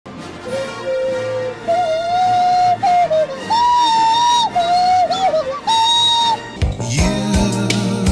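Music: a single melody line sliding between notes, then a drum beat and bass come in about six and a half seconds in.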